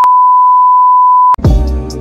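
A loud, steady single-pitch censor bleep lasting about a second and a half and cut off sharply. Music with deep bass notes that slide downward comes straight in after it.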